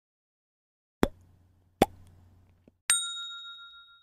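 Sound effects of a like-and-subscribe animation: two short pops about a second apart, then a bright bell ding, the notification-bell sound, that rings and fades near the end.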